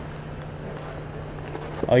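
Steady low hum under outdoor background noise, with no distinct knocks or scrapes; a man's voice starts near the end.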